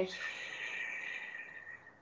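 A long audible breath out through the mouth during a guided deep-breathing exercise. It starts strong and fades away over nearly two seconds.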